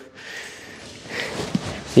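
Quiet grappling sounds: cloth gis rustling and bodies shifting on a mat, with a breath about a second in and a soft thump shortly before the end.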